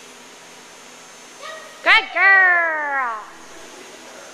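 A dog's short sharp bark about two seconds in, followed at once by a long drawn-out call that slides down in pitch for about a second.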